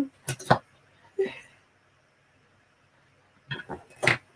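Wooden drop spindles knocking together as they are handled in a basket: a couple of sharp clicks early, then a few more near the end, with a short vocal sound about a second in.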